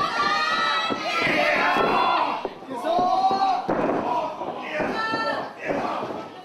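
Loud shouting voices with crowd noise in a hall, broken by a few thuds from the wrestling ring.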